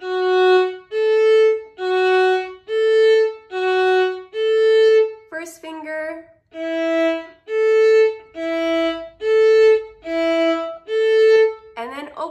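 Violin bowed on the D string: slow, even notes of about a second each, swinging back and forth between the fourth-finger A and a lower fingered note, which steps down to a lower note about halfway through. It is a fourth-finger (pinky) strengthening exercise.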